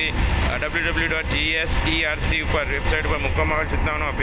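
A person speaking over the steady low rumble of a moving road vehicle.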